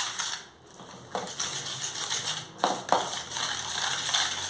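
Wire whisk scraping and rattling against a stainless steel bowl while beating margarine, egg, sugar and yeast together. Briefly quieter about half a second in, then irregular scraping with a few sharper knocks of the whisk on the metal.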